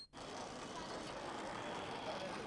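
A small electric model train running around its metal track, a steady motor-and-wheel noise.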